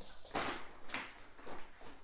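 A dog and a cat at play: a few short scuffling and rustling noises, with no barks or growls.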